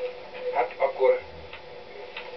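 Brief speech from a television speaker, picked up in the room: a few short spoken fragments in the first half, then a pause.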